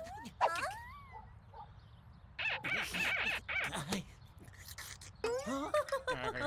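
Wordless cartoon character voices. A sing-song voice glides up and down in the first second, a run of short vocal sounds follows around the middle, and a rising call comes near the end.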